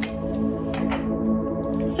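Soft ambient background music with steady held tones. A few light, short clicks of tarot cards being handled sound over it.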